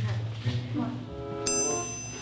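Background music and low voices, with a bright bell-like chime sound effect striking once about one and a half seconds in and ringing on.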